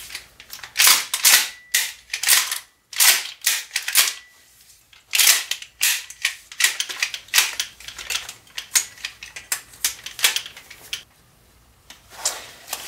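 PPS M870 shell-ejecting gas airsoft shotgun having its pump action racked over and over. Each stroke gives sharp mechanical clacks, often in close pairs, and these stop about a second before the end.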